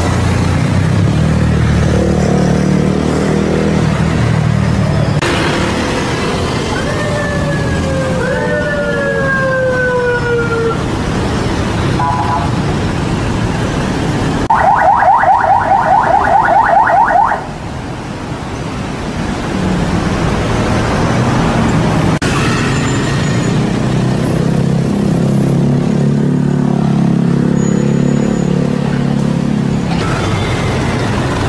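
Busy city road traffic: engines of cars, buses and motorbikes running steadily. A sliding tone falls twice about a quarter of the way in. Midway, a loud, rapid electronic pulsing like a car alarm sounds for about three seconds.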